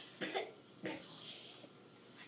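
A person coughing: a quick double cough about a quarter second in, then a single cough just before one second.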